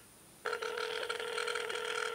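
A steady electronic telephone tone through a phone's speaker, starting about half a second in and holding level for just under two seconds, as 1 is pressed in an automated phone menu.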